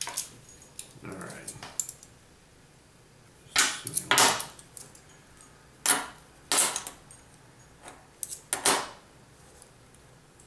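A stack of half-dollar coins clinking and sliding against one another as they are handled and fanned through in the hand, in several short bursts.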